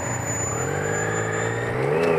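Motorcycle engine pulling away from a stop, its pitch rising steadily as it accelerates, heard through an action camera's built-in microphone.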